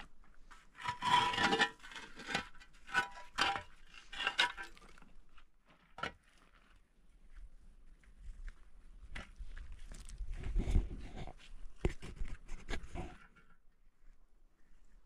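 Scraping and crunching on stone and gravel in two runs of rough strokes, each a few seconds long; the first run carries a faint metallic ring.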